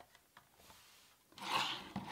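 Handling noise: a few faint clicks as a power plug is seated, then near the end a short rubbing scrape as a small plastic project box is moved across a wooden tabletop.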